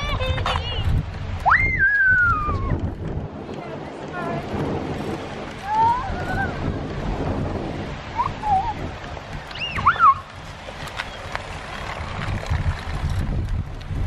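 Wind buffeting the microphone in a steady low rumble, with a few brief high-pitched calls or cries scattered through it. The clearest is a falling one about two seconds in, and another comes about ten seconds in.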